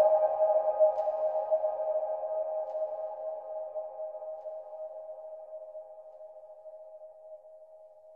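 The closing tone of a psytrance track: a single sustained synthesizer note with a few overtones, fading out slowly. The low bass drops away within the first second or two.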